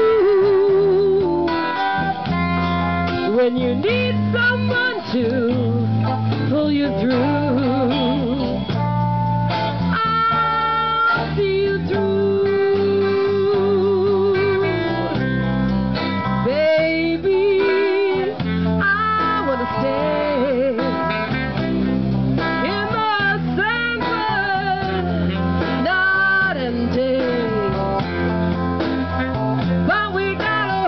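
Live blues band playing: electric and acoustic guitars and bass under a wavering lead melody line with held, bending notes.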